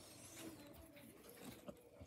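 Near silence: room tone with a few faint, irregular clicks.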